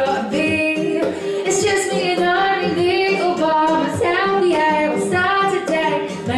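Woman singing into a microphone, accompanied by a strummed classical guitar.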